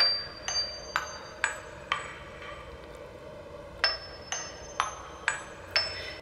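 A software music-box sound played from a DAW: bright, bell-like plucked notes, each with a sharp 'tac' attack. It plays five notes at about two a second, pauses for about two seconds, then plays five more.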